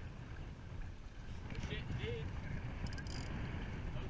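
Wind buffeting a GoPro microphone aboard a Laser sailboat underway, a steady low rumble with water washing along the hull; a short high hiss about three seconds in.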